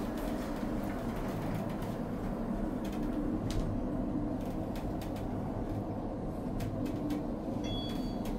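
Ride noise inside the cab of a 700 ft/min traction elevator travelling down its shaft: a steady low rumble with scattered faint clicks. A short high electronic tone sounds near the end.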